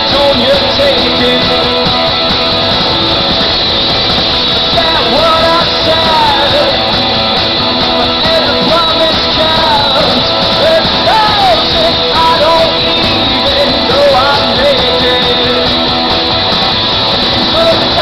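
A rock band playing live and loud, electric guitars with a male lead vocal singing over them, heard from the audience.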